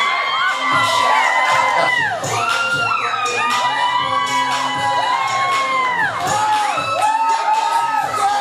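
A crowd of women shrieking and cheering, many high voices overlapping in long sliding whoops, with music playing underneath.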